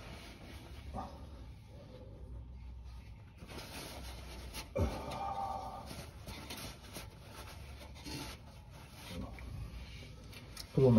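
Paper towel being rustled and laid over the car's cross member, with faint handling noise and a single sharp knock about five seconds in.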